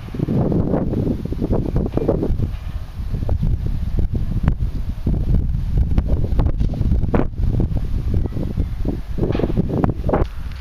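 Wind buffeting the microphone: a loud, gusty low rumble that swells and dips.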